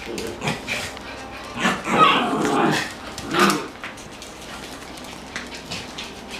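Dogs barking in a few short bursts, loudest about two seconds in, then quieter.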